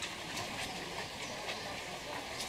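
Footsteps scuffing on gritty stone steps, a steady run of steps over a constant background hiss.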